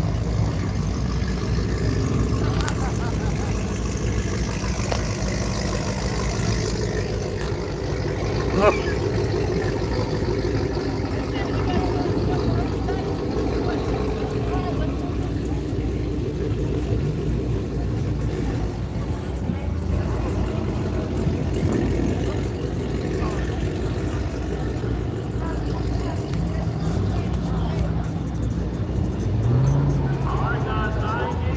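Car engines running at a drag strip, a steady low rumble with people talking in the background. A sharp knock about nine seconds in.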